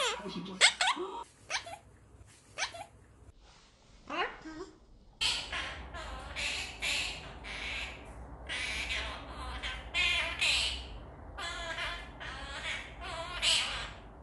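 Blue quaker parrot (monk parakeet) vocalizing: a few short calls that glide in pitch in the first seconds. Then, from about five seconds in, a rapid run of about a dozen short, harsh, squawky chatters.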